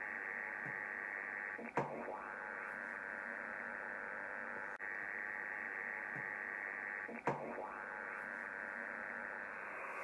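Yaesu FTdx5000 HF receiver's audio on the 80 m band in LSB: steady band-noise hiss laced with man-made interference (QRM) that resets, a brief chirp-like break about two seconds in and again about five and a half seconds later, after which the noise returns. It is the recurring local interference that shows up every 70 kHz across the band.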